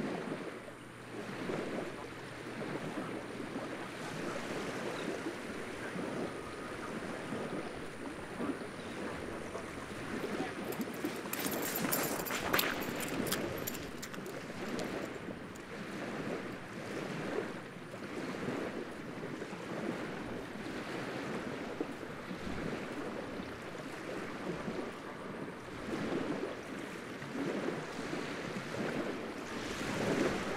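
Outdoor ambience of small waves lapping and wind buffeting the microphone, a steady, unevenly pulsing rush, with a brief louder burst of noise about twelve seconds in.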